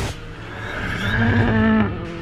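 Rally car engine revving hard as the car approaches, its pitch climbing, then holding high and getting louder before cutting off sharply near the end.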